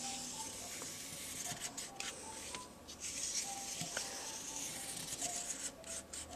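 Felt-tip marker drawing on a paper plate: a faint, scratchy hiss of the tip dragging across the paper, broken by short pauses as the pen lifts.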